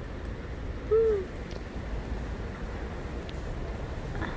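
A single short hummed note from a woman's voice, rising then falling in pitch, about a second in, over a steady low background rumble.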